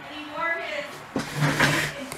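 A person's voice, then a loud rushing noise with a low hum lasting under a second, near the end.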